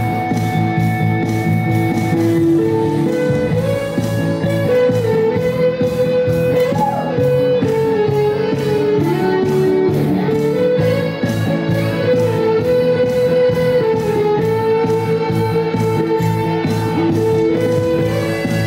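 Live band playing an instrumental passage: a single melodic lead line over guitar and keyboard accompaniment, with no singing.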